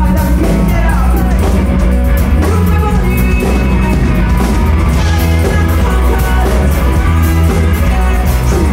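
A rock band playing live at full volume: electric guitars and drums with a steady beat, and a woman singing over them.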